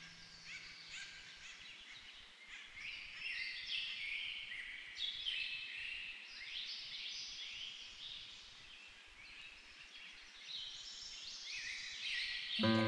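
A chorus of small birds chirping and singing, many short high calls overlapping and swelling louder in the middle.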